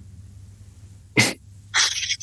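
Two short, sharp breath sounds from a man, one about a second in and a breathier one near the end, over a faint steady low hum.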